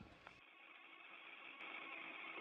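Near silence: the faint, steady hiss of an open radio communications channel, growing a little louder toward the end.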